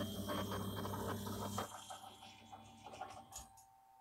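NEMA 17 stepper motor driving a 3D printer's belt-driven, counterweighted Z axis through a homing move: a steady hum with a run of clicks for about a second and a half, then fainter and broken by scattered clicks until it stops.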